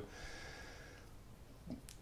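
A quiet pause between a man's sentences: faint room tone with a soft breath, and a small mouth click just before he speaks again.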